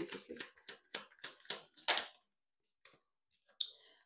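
A deck of oracle cards shuffled by hand: a quick run of about a dozen crisp card slaps over two seconds, then stopping.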